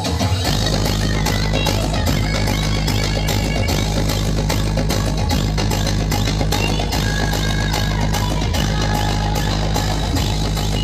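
Loud dance music played through a large DJ sound system. A heavy, steady bass comes in about half a second in.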